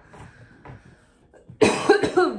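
A woman coughs to clear her throat, one short harsh burst about a second and a half in.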